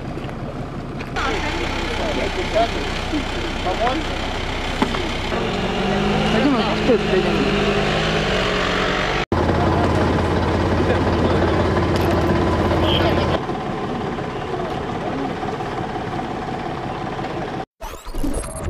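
Indistinct voices over a steadily running vehicle engine, with the sound changing abruptly several times as the footage is cut.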